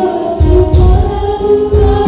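Gospel choir singing in the worship team's style, with electronic keyboard accompaniment and a recurring bass beat under the voices.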